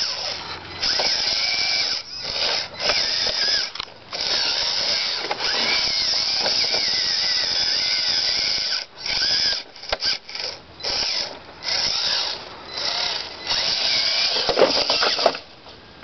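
Electric motor and gear drive of a scale RC rock crawler whining in bursts as the throttle is worked: a few short pulls, one long run of about four seconds, then quick stop-start bursts near the end.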